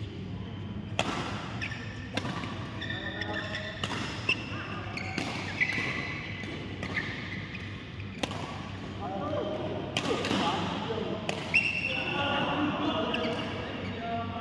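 Badminton rally: sharp racket strikes on the shuttlecock every second or two, with short high squeaks of shoes on the court mat and voices in the background.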